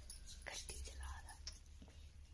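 Quiet room with a faint whispered voice and a few light clicks.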